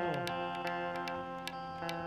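Harmonium holding a steady chord under a light, regular ticking beat of about three or four ticks a second, with the tail of a sung phrase sliding down and fading in the first half-second.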